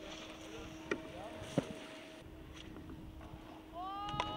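Faint outdoor ambience with a steady low hum that fades out about halfway. Two sharp clicks come about one and one and a half seconds in. Just before the end, voices begin whooping with rising pitch.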